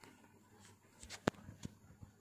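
Faint room tone in a pause of speech, with a few small clicks in the second half, the sharpest a little past the middle.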